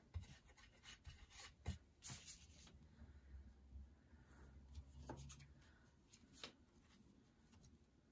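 Faint rustling and rubbing of paper as a glued strip of torn book page is laid on a paper envelope flap and pressed down by hand, with a few soft ticks early on.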